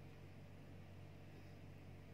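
Near silence: room tone, a steady low hum with faint hiss.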